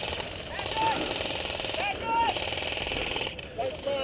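A rapid, steady rattle of airsoft guns firing in full-auto bursts, easing off about three seconds in, with faint distant shouts.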